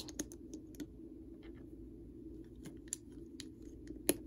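Small plastic LEGO pieces clicking faintly and irregularly as fingers handle them and press them onto a brick model, with a sharper click near the end.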